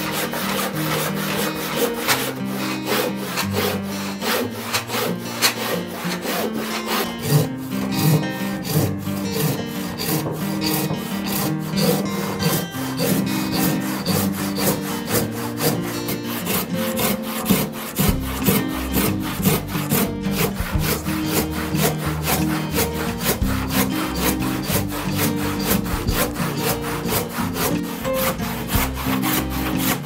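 Handsaw cutting a thick reclaimed barn timber by hand, in a steady run of back-and-forth strokes with the teeth rasping through the wood.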